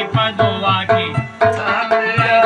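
Folk music: a plucked long-necked lute playing a melody over hand percussion struck in a quick, steady beat.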